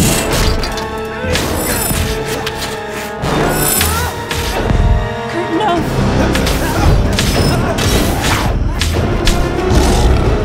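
Film soundtrack: dramatic music score mixed with action sound effects, with repeated heavy impacts and booms throughout.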